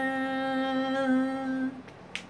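A man's voice singing unaccompanied, holding one long steady note at the end of a line, which stops about a second and a half in.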